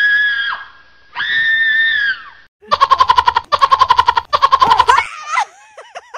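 An edited-in sound effect: two long, high-pitched screams, then hysterical laughter in three fast bursts of about ten "ha"s a second.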